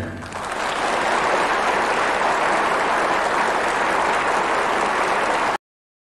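Audience applauding, building up over the first second and then holding steady, until it cuts off abruptly near the end.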